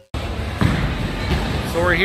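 Bowling alley din: bowling balls thudding and rolling on the lanes over a steady noisy background, with a voice starting near the end.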